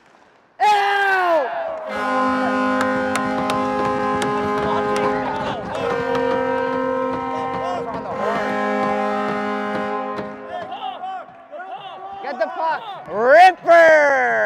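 Arena goal horn sounding after a goal in three long blasts, a steady chord-like tone that shifts pitch slightly between blasts and sounds unusual. A drawn-out falling shout comes before it, and more shouts near the end.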